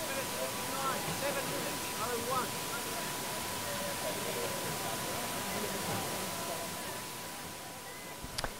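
Open-air athletics stadium ambience: a steady hiss with faint, distant voices of onlookers and a thin, steady high tone underneath.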